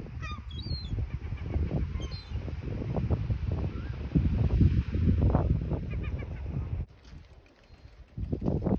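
Wind buffeting the microphone, with several short calls from waterbirds (gulls or geese) in the first two seconds and again about six seconds in. The wind noise cuts off suddenly near the end.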